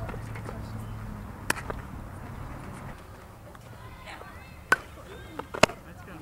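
Sharp pops of a softball striking leather and bat during ground-ball fielding practice, a few seconds apart. A double knock comes about a second and a half in, then louder pops about five seconds in and just before the end.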